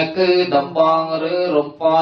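Buddhist monks chanting a Pali blessing in unison, male voices reciting on a nearly level pitch in steady, evenly paced syllables, with a brief breath pause near the end.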